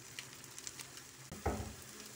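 Onion, tomato and green capsicum masala sizzling faintly in a nonstick pan, with a few light clicks of stirring and a short bump about one and a half seconds in.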